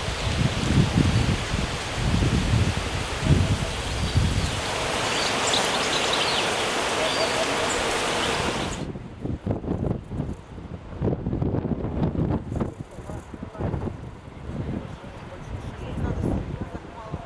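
Outdoor ambience: steady wind noise on the microphone with low buffeting and rustling. About nine seconds in it cuts off suddenly to quieter outdoor background with scattered faint sounds.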